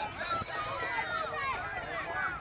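Several distant voices calling out and talking over one another across an open soccer field: spectators and young players shouting during play.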